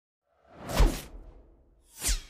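Whoosh sound effect from an animated logo intro. It swells up and sweeps down in pitch to a low thud a little under a second in, then fades, and a second whoosh starts near the end.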